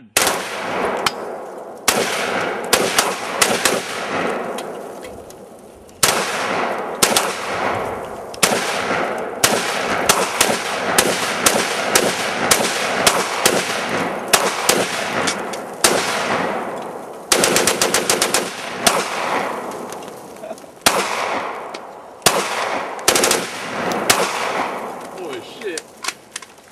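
Two AR-15 rifles and two pistols, a CZ 75 B 9mm and a Springfield XD Subcompact .40 S&W, fired together in rapid, overlapping shots, each shot with a short echo. A very fast string of shots comes a little past the middle.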